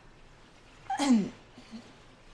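A young woman's single short vocal sound about a second in, breathy at its start, its pitch sliding down.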